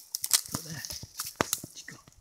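Dry leaf litter and twigs crackling and rustling in quick, irregular clicks as a dog noses and paws through the forest floor.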